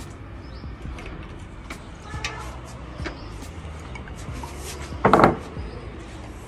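Tea things and a plastic water bottle being handled on a glass-topped table: a few light clicks and knocks, then one louder, short knock about five seconds in, over a steady low background hum.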